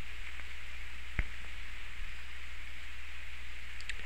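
Steady hiss with a low hum underneath, the recording's own noise floor, with one faint click about a second in.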